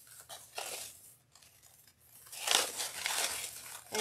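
Wired ribbon loops of a large bow being pulled and fluffed by hand: scratchy rustling and crinkling, in a few short bits, then a pause, then a longer, louder stretch near the end.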